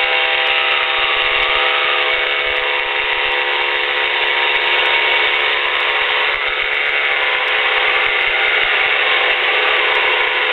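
Weight-shift trike's engine and pusher propeller running steadily at climb power as the trike lifts away from the runway, a droning tone that holds its pitch with small shifts about two and six and a half seconds in. Heard thin through the headset intercom.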